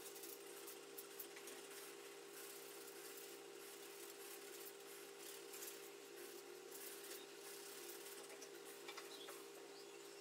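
Faint snips and rubbing as a handheld grooming tool works through a Welsh terrier's wiry coat, heard as scattered light ticks over a steady low hum.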